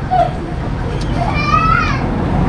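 Background voices over a steady low rumble: a high-pitched voice rises and falls in pitch about one and a half seconds in, with a brief click just before it.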